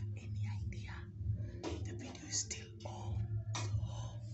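A man whispering to the camera, in short hushed phrases, over a steady low hum.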